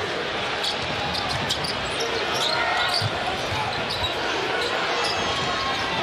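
Basketball arena ambience: a steady crowd murmur, with a ball being dribbled on a hardwood court and short high sneaker squeaks scattered through.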